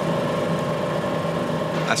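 An engine idling, a steady even hum.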